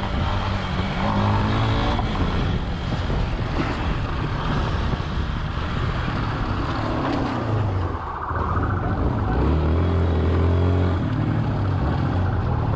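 Police trail motorcycle's engine running as it is ridden, its note rising and falling several times with the throttle and easing off briefly near the end, over a steady rushing noise.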